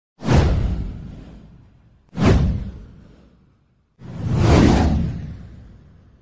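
Three whoosh sound effects, each starting sharply and fading out over a second or two, about two seconds apart.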